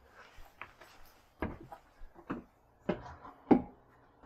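Four footsteps on wooden porch boards, spaced about half a second to a second apart.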